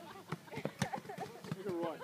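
Players calling and shouting across a sand volleyball court, with a quick string of short knocks as balls are hit and thrown over the net.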